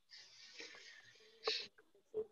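A person's faint, drawn-out breath into a headset or laptop microphone, then a short louder hiss of breath about one and a half seconds in.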